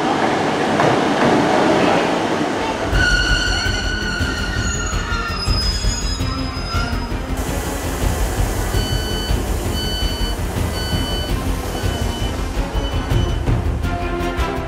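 Northern Class 150 diesel multiple unit drawing into the platform. About three seconds in, this gives way to the low rumble of the train heard from inside the carriage, with a wavering squeal for a few seconds. Then comes a run of short, evenly spaced door warning beeps.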